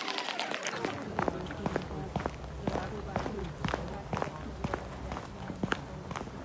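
Footsteps on an asphalt road, about two a second, from someone walking with the camera.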